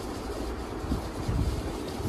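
Low, uneven rumbling handling noise from a handheld phone's microphone being moved about.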